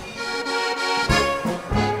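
Brass band with accordion playing a polka, the accordion to the fore in a short instrumental gap between sung lines. The low brass beat drops out briefly and comes back about a second in.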